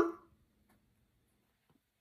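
Near silence: a spoken word trails off in the first moment, then room tone.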